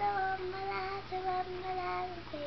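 A young girl singing, holding a run of notes on nearly one pitch with brief breaks between them.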